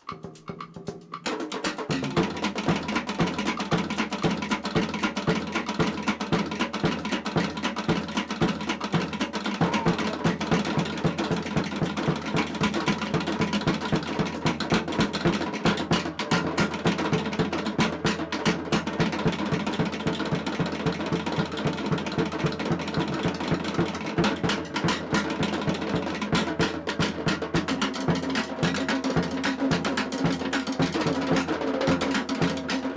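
Tahitian dance drumming from a drum ensemble: a fast, steady rhythm of sharp drum strokes that starts about a second in and runs on without pause.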